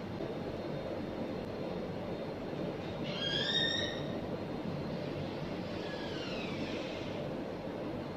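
Steady low background noise, with a short high-pitched squeal about three seconds in and a fainter falling whine a few seconds later.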